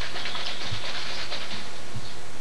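Steady, even hiss with no other clear sound: the background noise of an old 1983 videotape recording.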